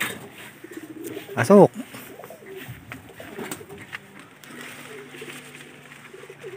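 Racing pigeons cooing at the loft, a low steady coo through the last second and a half, with a short louder sound about one and a half seconds in.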